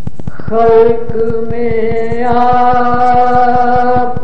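A man singing an Urdu nazm holds one long, sustained note from about half a second in, over a fast, steady beat of about seven ticks a second.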